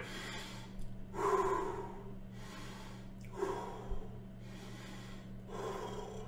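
A man taking slow, deep breaths in and out, the longest about a second in, with a faint steady electrical hum underneath.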